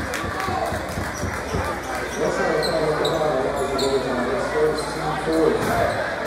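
Indoor basketball game sounds: the ball bouncing and sneakers squeaking on a hardwood court, with voices from players and the crowd echoing in a large gym. Sharp knocks come in the first second, and short high squeaks come a little past the middle.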